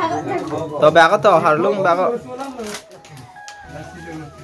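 People talking in a room, led by a high-pitched voice that is loudest in the first two seconds, then quieter talk.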